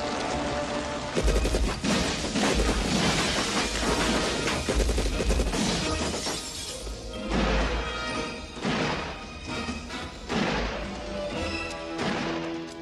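Action-film shootout sound effects: a long run of crashes and shattering glass with heavy low booms, over a loud action music score.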